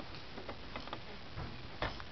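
A few light, irregularly spaced clicks from a plastic baby toy turned over in a baby's hands, the loudest near the end.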